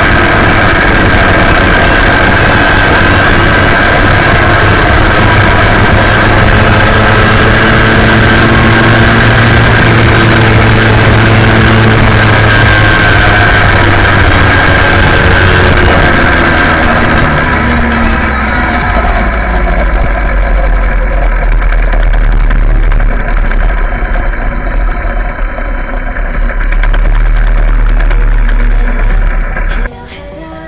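Babetta 210 moped's 50 cc two-stroke engine running on the move, with road and wind noise on a wheel-mounted microphone. About two-thirds of the way through the engine note drops and the high hiss falls away.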